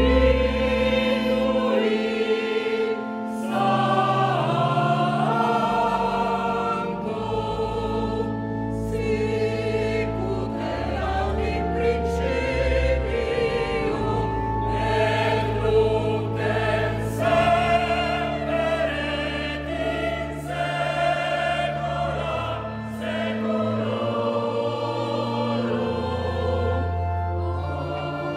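Mixed choir of men and women singing a sacred piece in a church, accompanied by organ with long held bass notes.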